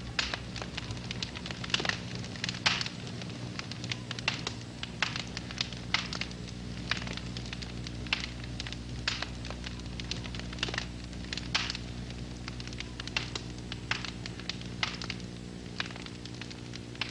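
Irregular crackling: sharp clicks, several a second and uneven in strength, over a steady low hum.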